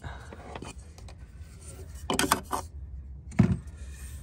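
Black plastic fuel filter housing cap being lifted off and handled: light clicks and rattles, with a short louder burst about two seconds in, over a steady low hum.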